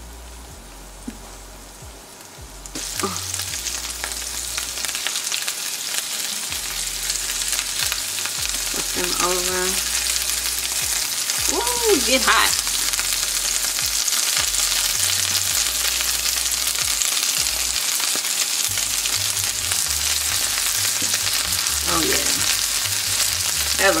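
Filled corn tortillas with meat, onions and cheese frying in a hot nonstick pan, a steady sizzle. The sizzle jumps up loud about three seconds in and holds as the tacos are folded and turned with tongs.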